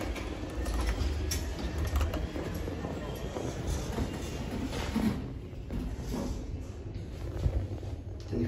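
Kone MonoSpace passenger lift setting off and travelling after the floor button is pressed: a low steady rumble of the moving car, heaviest in the first couple of seconds, with a few light clicks.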